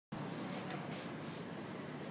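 Steady hum of a station platform, with several brief soft scratches and rubs from the recording device being handled against the microphone.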